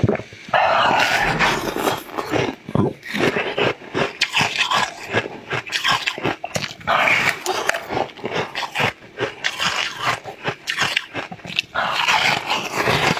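Close-miked eating of a pink jelly sweet: repeated bites and chewing with wet, smacking mouth sounds and many small clicks and crackles.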